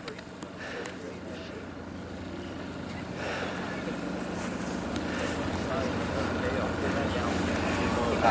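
A steady low motor hum, growing louder, with indistinct voices of people nearby.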